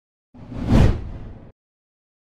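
Whoosh transition sound effect: a single rushing swell of noise over a low rumble, rising to a peak and dying away within about a second.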